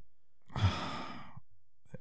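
A man sighing once: a single breathy exhale of about a second, starting about half a second in and trailing off.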